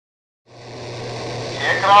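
Silence, then about half a second in a steady low hum with hiss fades in. Near the end a man's voice starts a radio transmission over it, an air-defence controller calling out "heading two seven zero".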